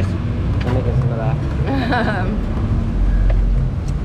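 Steady low rumble of street noise, with faint, indistinct voices about halfway through.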